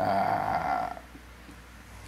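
A man's short breathy, throaty vocal noise between phrases, lasting about a second, then dying down to quiet room tone.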